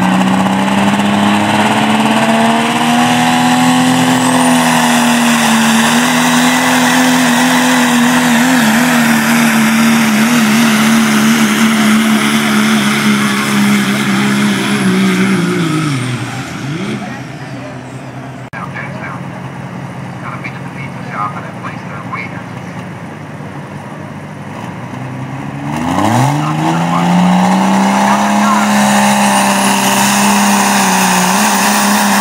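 Diesel pickup trucks in a 3.0 diesel truck-pulling class. A Dodge Ram runs flat out at a steady high engine pitch for about sixteen seconds while dragging the sled, then its revs fall away as it lifts off at the end of the pull. After a quieter stretch, the next diesel pickup revs up sharply near the end and holds at high revs as it starts its pull.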